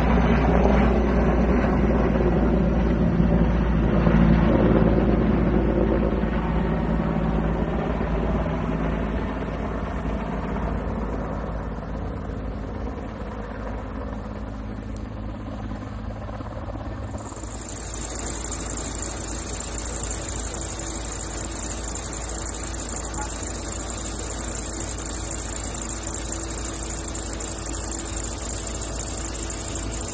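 Helicopter flying close by, its rotor and engine loud at first and fading over about ten seconds as it moves off. About seventeen seconds in, a steady high-pitched buzz sets in and holds.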